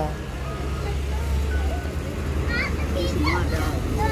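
Street background with a steady low engine rumble from nearby vehicles and a few short snatches of distant voices just past the middle, under the rustle of thin plastic bags being filled with bread rolls.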